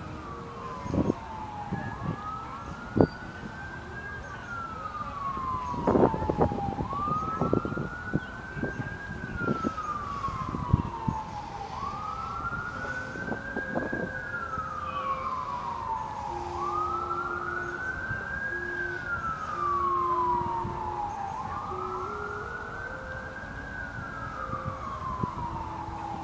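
Emergency vehicle siren sounding a slow wail: the pitch climbs quickly, then slides down more slowly, over and over about every five seconds. Scattered knocks sound over it.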